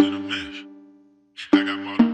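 Phonk/trap instrumental beat in C minor at 195 BPM: a low melodic synth note struck at the start rings out under a chopped vocal sample and fades to a short silence about halfway. Fresh notes strike about a second and a half in and again at the end.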